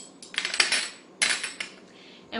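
Metal teaspoon clinking and scraping against a small glass bowl of whole flaxseed, in two short bursts about a second apart.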